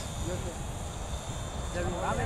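Electric RC model airplane (E-flite Piper J-3 Cub 25) flying high overhead, its brushless motor and propeller a faint, steady distant whine, with wind rumbling on the microphone.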